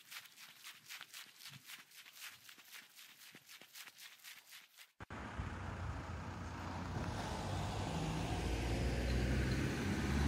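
Footsteps swishing along a grassy path at a brisk walking pace, faint and regular. About halfway through, a sudden change to a low rumble of road traffic that grows louder toward the end.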